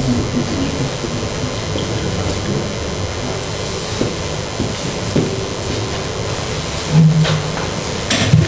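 Steady low rumbling room noise picked up by the hall's microphones, with a few soft knocks about halfway through and a brief low hum near the end.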